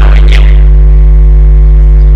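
Loud, steady low electrical hum, with a row of fainter steady tones above it, in the microphone feed. A man's speech trails off about half a second in, and the drone holds on alone.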